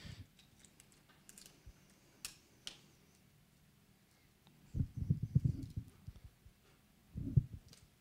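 Quiet handling sounds of small parts on a wooden tabletop: a few light clicks early, then two clusters of soft knocks and rubs, the louder about five seconds in and a shorter one about seven seconds in.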